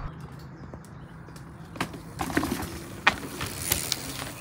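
Mountain bike rolling down a dirt trail: a steady low rumble from the tyres, broken by a few sharp rattles and knocks from the bike about two seconds in and again around three seconds in.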